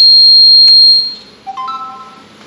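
A loud, steady, high-pitched electronic buzzer tone cuts off about a second in. Half a second later a short chime of three notes steps upward.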